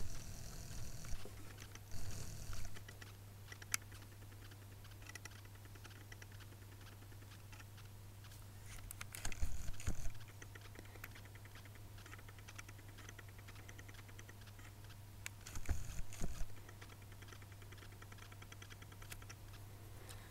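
Faint handling noise: a few short bursts of clicks and rustling as fingers hold and shift the packaging of an eyeshadow palette close to the microphone. A steady low hum runs underneath.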